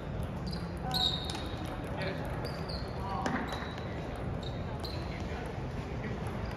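Table tennis rally: the celluloid ball clicking off the paddles and the table again and again, at an uneven pace. Short high squeaks, from sneakers on the hardwood gym floor, come in between.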